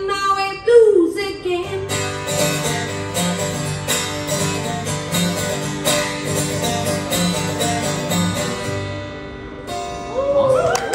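Acoustic guitars strumming the closing chords of a song, with a singer's held last note sliding down in pitch in the first second or two. The chords ring on, fade, and stop just before the end.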